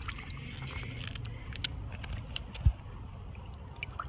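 Shallow water splashing and dripping in small sharp ticks as a fish is lowered into it by hand for release, over a low steady rumble. One dull thump comes about two-thirds of the way through.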